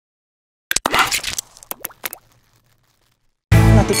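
A quick run of sharp pops and clicks for about a second and a half, some ringing briefly. Then loud music with long, steady held notes starts suddenly near the end.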